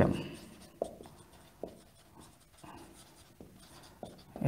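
Marker writing on a whiteboard: faint scratchy strokes with a few light ticks as letters are drawn.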